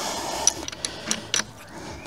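Hand tools and e-bike parts being handled: a short rustle, then a few sharp metal clicks and knocks, as an open-end wrench is brought to the front fork.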